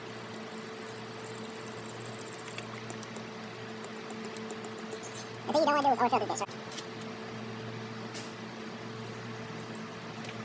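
Motor oil pouring from a plastic jug through a funnel into the engine's oil filler, faint over a steady low hum. The pouring pauses around the middle, where a brief voice is heard, and starts again near the end.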